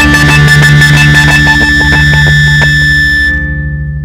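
Loud rock music with electric guitar reaching its ending. The full band plays on, then a little over three seconds in the upper sound cuts off and a low chord rings on, pulsing as it fades.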